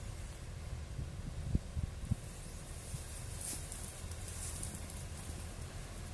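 Wind rumbling on the microphone outdoors, with faint rustling and a few soft knocks about one and a half to two seconds in.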